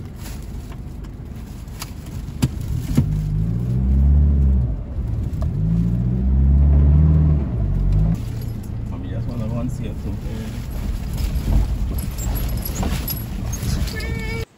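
Toyota Hilux pickup engine heard from inside the cab, pulling away and revving up twice, each climb in pitch lasting a couple of seconds, with a few sharp knocks from the cabin near the start.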